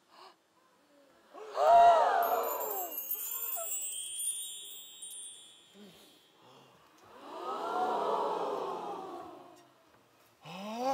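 A shimmering magic-chime sound effect, a glittering run of high chimes, signalling a magical transformation. A group of voices goes 'ooh' about a second and a half in, and again, longer, near the end.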